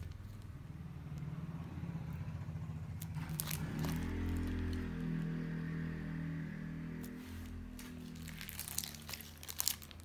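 A plastic clear file being handled, with a few light crinkles and taps. Under it runs a steady low droning hum that swells and rises slightly about four seconds in.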